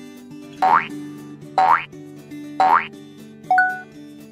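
Three quick rising cartoon 'boing' sound effects about a second apart, then a short bright ding near the end, marking the reveal of the quiz answer. Soft background acoustic guitar music plays underneath.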